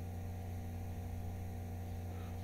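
Steady low electrical hum with faint hiss, the background noise of the recording between spoken phrases.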